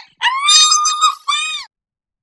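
A voice screaming very high-pitched, one long cry of about a second, then a second shorter scream that cuts off suddenly.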